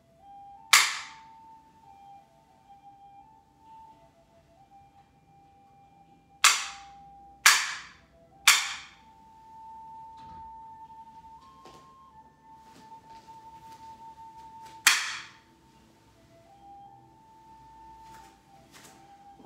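A hand-held wooden clapper struck five times, with sharp cracks that ring briefly: once about a second in, three times about a second apart a few seconds later, and once more near the end, as signals in the opening ritual before practice. Faint held notes of background music play underneath.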